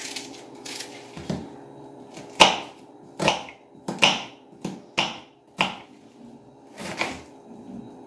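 Kitchen knife chopping onion on a wooden cutting board: an irregular run of sharp knocks, about one a second, as the blade cuts through and strikes the board.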